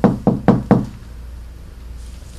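Knocking on a door: four quick, evenly spaced knocks in the first second, the end of a longer run of raps.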